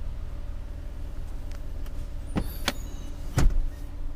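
2018 Jeep Cherokee's 60/40 split rear seatback being folded flat: a few sharp clicks, then the seatback lands with a loud thump about three and a half seconds in, over a steady low hum.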